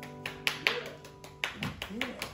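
Sparse, uneven handclaps from a small audience, about four or five claps a second, over the last acoustic guitar chord ringing out.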